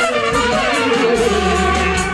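Live brass band playing a dance tune, with trumpets carrying the melody and a low bass note held through the second half.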